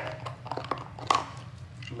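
A husky gnawing a raw rib bone picked almost clean, its teeth scraping and clicking on bare bone in a string of irregular ticks, with one sharper crack a little past the middle. This is the scraping that cleans the teeth.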